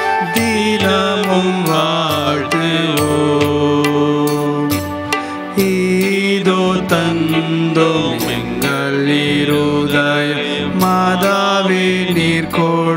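Devotional hymn music: a melody sung over instrumental accompaniment with a steady beat.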